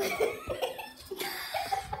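A person's sudden sharp cough-like burst of voice, followed by short broken voice sounds.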